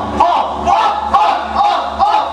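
Live indie rock band playing loud: a repeated shouted vocal phrase about twice a second over bass and drums, with a crowd shouting along.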